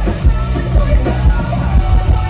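Live rock music played loud through a festival PA: a female singer's vocals over drums and a heavy low end, with regular drum beats.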